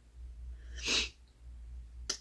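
A person's single short, sharp breath through the nose, about a second in, over faint room hum.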